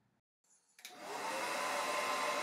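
Silence, then a click and a handheld hair dryer switching on a little under a second in, rising to a steady whir with a steady whine in it.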